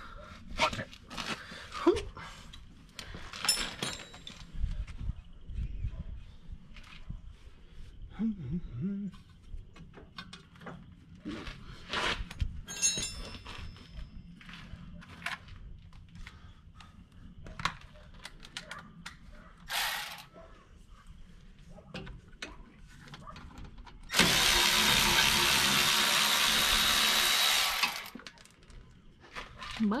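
Metal tools and suspension parts clinking and knocking while a front axle is worked free of a car's hub and steering knuckle. Near the end, a loud, steady noise runs for about four seconds and starts and stops abruptly.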